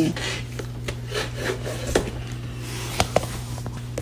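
Quiet handling noise: faint rubbing with a few light clicks about halfway through and again near the end, over a steady low hum.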